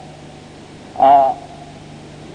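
A man's voice giving one short drawn-out 'aah' of hesitation about a second in, over a steady low hum.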